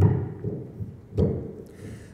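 Microphone handling noise: two dull thumps, the second a little over a second after the first.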